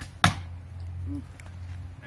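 A bowstring released, loosing an arrow: one sharp snap.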